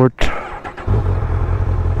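Honda motorcycle engine starting about a second in and then running at a steady low idle.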